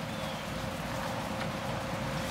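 Steady hiss of rain falling, with no distinct knocks or calls standing out.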